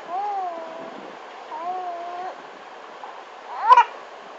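Baby cooing: two long coos, each rising and then falling in pitch, then a short, louder squeal near the end.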